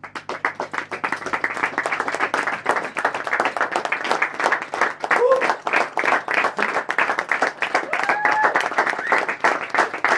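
Small audience applauding, dense clapping that breaks out suddenly after a quiet close, with a couple of brief voices calling out in the middle.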